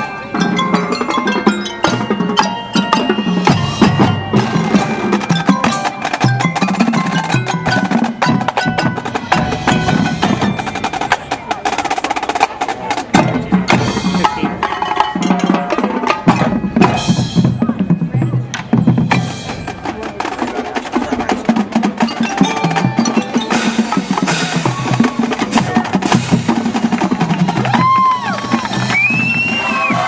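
High school marching band playing its field show: brass and woodwinds over a heavy layer of percussion with many sharp strikes. Near the end, two high whistles slide up and down over the music.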